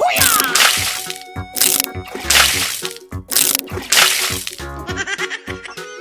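Loud water splashes, about five in the first four and a half seconds, from people falling and stepping through shallow water, over background music. After that the music plays on alone.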